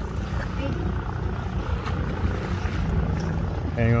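Distant floatplane's propeller engine droning steadily at takeoff power as it lifts off the water.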